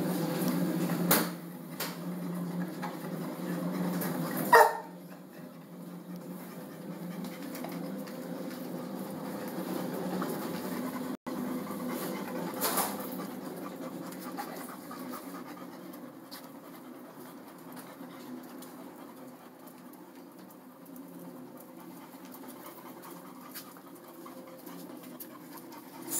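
Dogs panting steadily, with a sharp knock about four and a half seconds in and a few fainter clicks.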